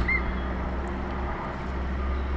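Steady low drone of a motorboat engine running, with one short high chirp right at the start.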